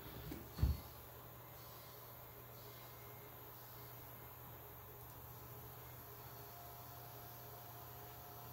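Faint steady low hum in a quiet room, with one soft low thump just under a second in.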